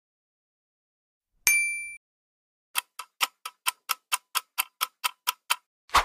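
Quiz sound effects: a single chime about a second and a half in, then a clock ticking about four times a second for some three seconds, ending in one louder hit near the end.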